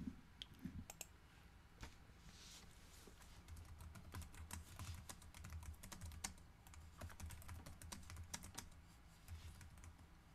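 Faint typing on a computer keyboard: a run of irregular key clicks heard through a video-call microphone.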